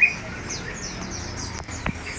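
Caged songbirds chirping: a few short, high, falling chirps in the first half, then a single click near the end.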